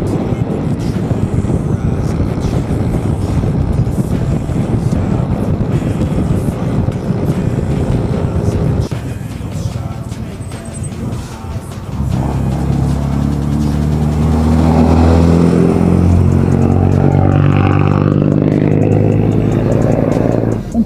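Motorcycle riding noise from a handlebar-mounted camera: rushing wind and engine under way. About twelve seconds in, background music with sustained, stepping chords takes over and grows louder.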